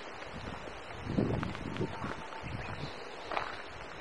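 Outdoor ambience of wind on the microphone with rustling, broken by a few short soft bumps about a second in and again near three seconds.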